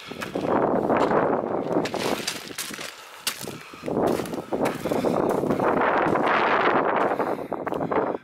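Footsteps crunching and sliding on loose scree, each step a rough gust of noise about a second long, with sharp clicks of stones knocking together.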